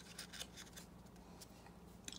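Near silence, with a few faint rustles of a hand on a sheet of paper in the first second, over a faint steady hum.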